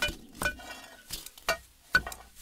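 Metal digging tools, pickaxes and the like, striking stony ground: about four or five sharp metallic clinks at irregular spacing, each ringing briefly.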